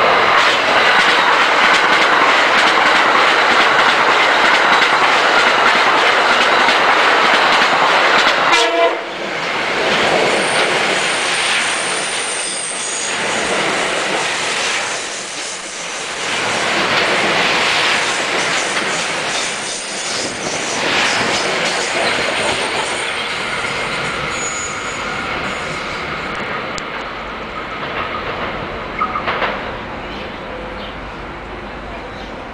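Electric commuter train cars passing close and fast, a loud rush of wheels on rail with clatter over the joints. It cuts off suddenly about nine seconds in, and then a second passing train rises and falls in loudness as its cars go by.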